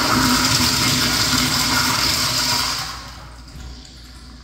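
Commercial flushometer toilet flushing: a loud rush of water that dies away about three seconds in.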